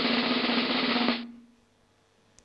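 Sound effect from an animated fougasse-mine sequence, played through the hall's speakers: a loud, even rushing noise with a low hum under it. It stops abruptly a little over a second in and dies away.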